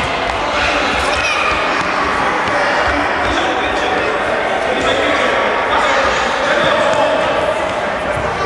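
Indoor futsal ball being kicked and bouncing on a sports-hall court, amid children's and adults' voices calling out during play.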